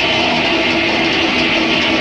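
Loud live heavy-metal band sound: distorted electric guitar holding a steady note over crowd noise, with the band about to launch into a song.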